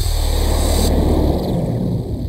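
Electronic techno music from a 1997 Scream Tracker/Impulse Tracker module: a noisy synth layer over a steady low bass, in a gap between two kick-drum hits. Its highest sounds drop away about a second in.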